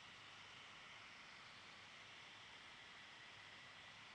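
Near silence: room tone with a steady faint hiss.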